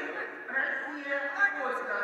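A man's voice speaking, heard over the open sound of a large hall.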